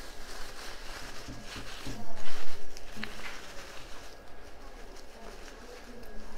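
Rustling and crinkling of artificial silk leaves and stems being handled and pushed through a flower arrangement, loudest about two seconds in.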